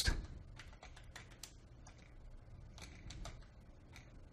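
Faint typing on a computer keyboard: a scattered run of separate keystrokes.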